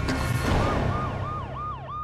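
A yelping siren sound effect over a low drone in a TV title sting: a rush of noise in the first half second, then a siren sweeping up and down about four times a second.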